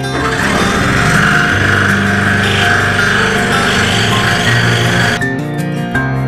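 Excalibur scroll saw cutting wood: a steady, rapid buzz of the reciprocating blade that stops suddenly about five seconds in, with acoustic guitar music underneath.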